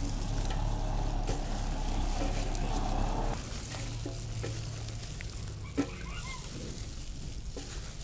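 Plastic-gloved hands tossing and mixing soft noodles, greens and shrimp in a large aluminium basin: a steady stirring and rustling sound, louder for the first three seconds and then quieter, over a steady low hum.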